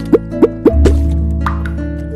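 A playful channel-logo jingle: four quick rising bloops in the first second, then a deep held bass note under a bright little tune.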